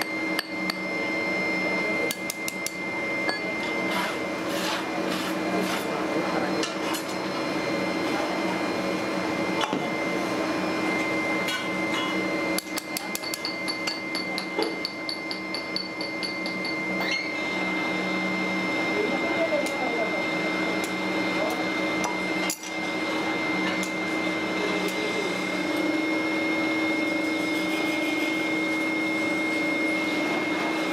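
Metal tools tapping and clinking on a steel moulding flask as sand moulds are worked for casting, with a quick run of taps a little past the middle. A steady machine hum with a high whine runs underneath.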